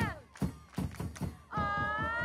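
Football supporters chanting to a drum: a sung note held close to the microphone falls away at the start, then come several drum beats, and a new long held note begins about a second and a half in.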